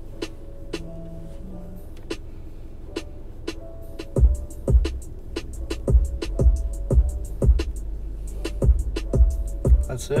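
Instrumental hip hop beat playing with no vocals: steady hi-hat ticks over held keyboard notes, then deep bass hits that slide down in pitch come in about four seconds in and repeat about twice a second.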